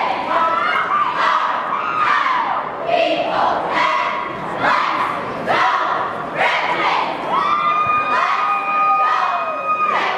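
Cheer squad shouting a chant in unison, in rhythmic bursts about once a second, over a cheering crowd in a gym. Near the end the voices hold one long yell for about two and a half seconds.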